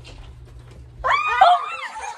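Young girls' high-pitched excited squeals, starting about a second in, with a few voices overlapping and the pitch sliding up and down.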